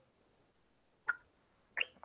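A person drinking from a water bottle during a pause: mostly quiet, with two faint, brief sounds of sipping or swallowing, one about a second in and one near the end.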